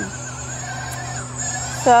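Remote-controlled T1H2 electric helicopter tug running while towing: a steady low motor hum with a thin high whine and a faint wavering tone.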